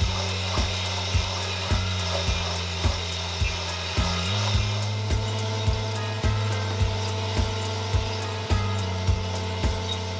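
Green coffee beans tumbling and rubbing in the rotating drum of a Huky 500T coffee roaster, early in the roast with no cracking yet. A regular tick comes a little under twice a second, under background music with sustained chords that change twice.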